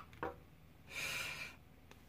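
A short breath out, a soft hiss lasting about half a second about a second in, with a small click just before it and another faint click near the end.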